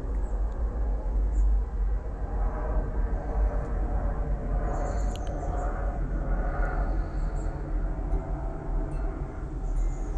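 A steady low rumble with a noisy haze above it.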